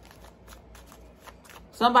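A deck of tarot cards being shuffled by hand: a quick, even run of soft card clicks. A woman's voice comes in near the end.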